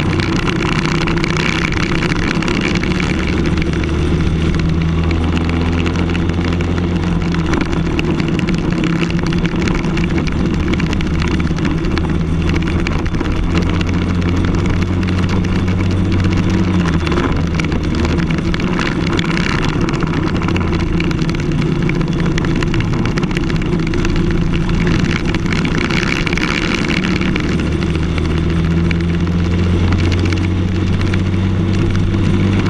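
Briggs & Stratton LO206 single-cylinder four-stroke kart engine, recorded onboard at racing speed. The note rises and falls with the revs through the corners and straights, dipping about halfway through and then climbing again, over steady wind and tyre noise.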